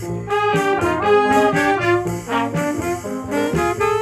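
Jazz ensemble playing, with the brass section of trumpets and trombones in front over saxophone, electric guitar, upright bass and piano. Sustained chords move in a steady succession, with a short break a little past two seconds.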